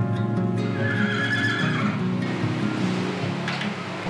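Background music with a steady tone, and a horse whinnying once, briefly, about a second in.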